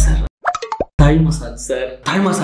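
Edited-in comic sound effects: a deep thud at the start and another about a second in, with a short cartoon plop of falling blips between them. A man's voice follows the second thud.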